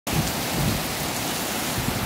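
Heavy rain falling on a flooded road and puddles: a steady, even hiss with a low rumble underneath.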